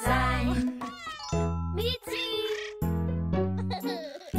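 Cartoon kitten meowing a few times in the first two seconds over the backing music of a children's song.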